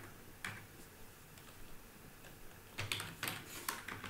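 Computer keyboard keys being typed: a single keystroke about half a second in, then a quick run of keystrokes near the end.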